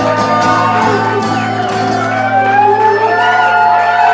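Acoustic guitar and harmonica playing live, a guitar chord held low while the harmonica plays bending notes over it, closing out the song.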